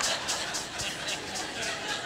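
A crowd laughing together, a dense, rapidly flickering wash of many voices in reaction to a joke.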